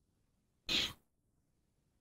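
A single short, breathy puff of air from a person, without voice, about two-thirds of a second in.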